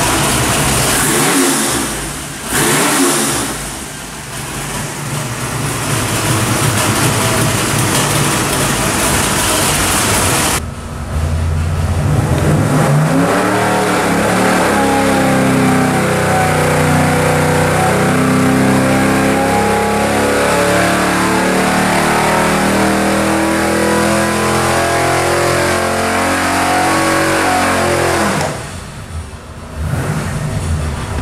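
421 cubic-inch small-block Chevy V8 running hard on an engine dyno, with a couple of brief dips in the first few seconds. After about ten seconds it sounds suddenly muffled as it is pulled up through its rev range under dyno load, the pitch changing with engine speed. It drops back to idle near the end.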